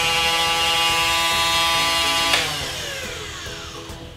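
Electric motor of a Xenon CDGT720 cordless grass trimmer, powered by an 18V Xenon grinder battery, running at steady full speed with a high whine. After about two and a half seconds it is switched off and winds down, its pitch falling as it slows.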